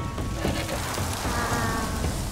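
Steady rain falling, as a storm sound effect, with soft background music over it.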